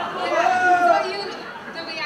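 Voices in a large hall: one person speaking briefly, over general chatter from the room.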